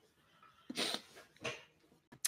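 A tearful woman sniffling, two short breathy sniffs through the nose, the first a little less than a second in and the second just after.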